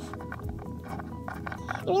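Soft background music with steady held notes, and a few light taps as a small plastic toy figure is handled on a table.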